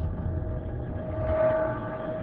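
Logo intro sound effect: a deep rumble continuing after an impact, with a steady hum on top that swells about a second and a half in.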